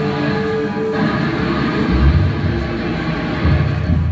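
Psychedelic rock band playing an instrumental passage live on electric guitars, with held notes at first; deep bass notes come in about two seconds in.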